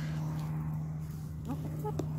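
Hens foraging close by in freshly dug soil, with a short rising chicken call about one and a half seconds in, over a steady low hum.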